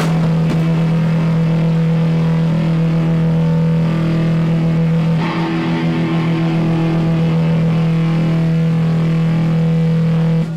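Live punk rock band's distorted electric guitar and bass holding one loud sustained note or chord that rings on steadily. It is struck again about five seconds in, with little drumming under it.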